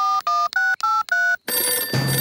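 Mobile phone keypad dialling: five quick touch-tone beeps, each two notes at once, at a slightly different pitch. About one and a half seconds in, a telephone ringing sound starts at the other end of the call.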